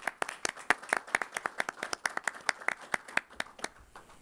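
A small audience clapping briefly. The separate, distinct claps come several a second and stop near the end.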